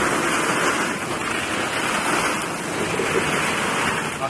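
A mesh sack of plastic ball-pit balls being emptied into a ball pit: a dense, continuous clatter of balls tumbling out onto one another.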